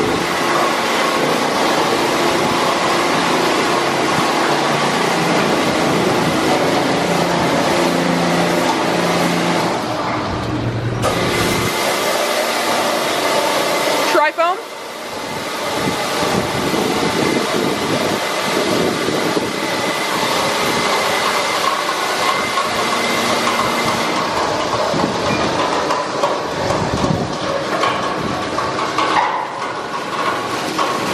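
Automatic PDQ Tandem RiteTouch car wash at work: large rotating wraparound brushes scrubbing the car amid spraying water, over a steady machine hum with a faint whine. About fourteen seconds in the noise briefly drops and a short rising whine sounds.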